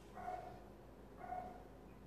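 A dog gives two short, faint calls about a second apart.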